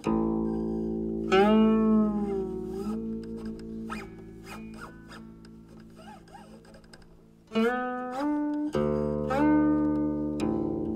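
Steel-stringed guqin played solo: plucked notes that ring on, several bending in pitch as the left hand slides along the string. A strong note about a second in, a soft passage in the middle, then louder notes again near the end.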